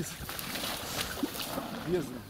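Water running and splashing through a breach under a pond dam, a steady hiss, with short bits of men's voices.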